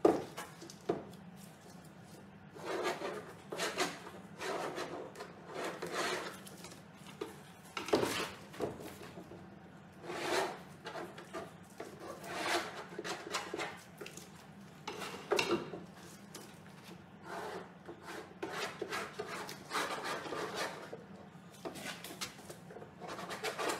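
A long metal straightedge dragged and scraped across a painting's surface in repeated rubbing strokes, each under a second, one to two seconds apart, starting with a sharp knock.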